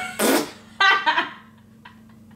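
A man blowing a short spluttering puff of air out through pursed lips, like a raspberry, followed by a brief laugh.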